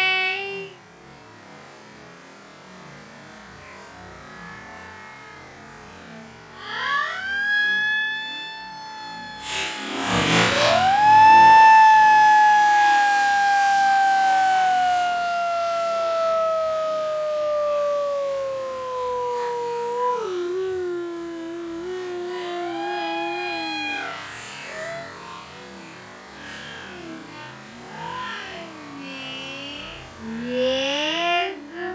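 Slow-motion, pitch-lowered sound of a person plunging into the sea. About ten seconds in there is a splash, then a long drawn-out shout slides slowly down in pitch. Other stretched voices glide up and down before and after it.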